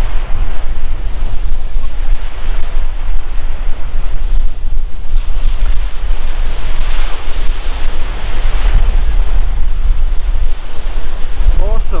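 Small waves breaking and washing up a sandy lake shore, with one louder wash about seven seconds in. Wind buffets the microphone throughout with a heavy low rumble.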